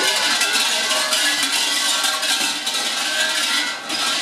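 Large brass suzu bell of a Shinto shrine hall shaken by its thick hanging rope: a dense metallic jangling rattle that dips briefly near the end.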